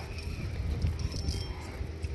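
Wind rumbling steadily on the microphone, a low buffeting with faint background noise above it.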